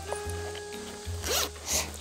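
A zipper on a work vest pulled in two quick rasps, about half a second apart, over background music.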